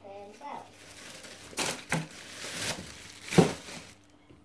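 Packaging crinkling and rustling as groceries are handled, in a few short scrapes, the loudest about three and a half seconds in.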